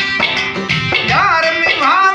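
Live Balochi folk music: a long-necked lute strummed in a steady pulse of about two strokes a second. About a second in, a wavering, ornamented melody line enters above it.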